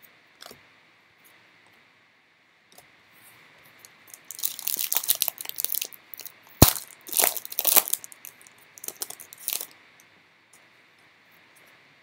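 A Panini Elite basketball card pack's wrapper being torn open and crinkled in bursts for about six seconds, with one sharp snap partway through.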